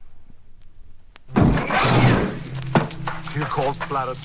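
Faint hiss with a few clicks, then a loud crash about a second and a half in that lasts about a second. A man's voice follows in a spoken dialogue sample over a low hum.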